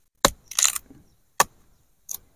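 Machete chopping cassava tubers off the stem: two sharp strikes about a second apart, with a brief scraping noise between them.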